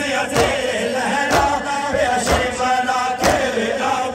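Voices chanting a noha, a Shia mourning lament, in unison. A sharp beat falls about once a second, kept by matam, the mourners' rhythmic chest-beating.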